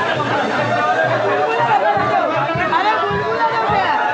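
A crowd of many voices talking and calling at once, over music.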